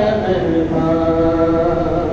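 Unaccompanied male chanting of a soz, the mournful Urdu elegy of a majlis. The voice glides between notes, then holds one long steady note through the second half.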